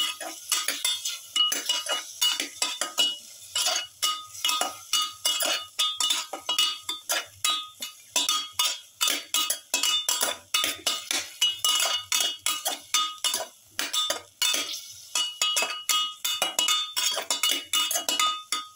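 A spoon stirring chunks of lamb and carrot in a pressure cooker pot, scraping and clinking against the metal sides over and over at a quick, uneven pace, with the pot ringing faintly after the knocks.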